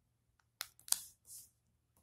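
Stiff origami paper being folded and pressed flat by fingers on a wooden table. A few quiet, crisp crackles come about half a second in and just before a second in, followed by a soft rustle.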